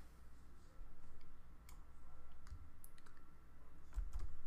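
A few faint, scattered clicks from a computer mouse and keyboard as a line of code is selected and copied, over a low background rumble.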